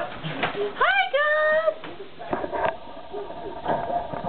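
A dog whining about a second in: a short rising cry, then a longer, steady high whine. A few clicks and knocks follow later.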